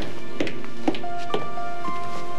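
Background music: sustained held notes over a light, steady percussive beat of about two strikes a second.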